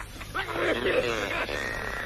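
A comic gag recording played on air: a wavering, voice-like sound whose pitch wobbles up and down, starting a moment in.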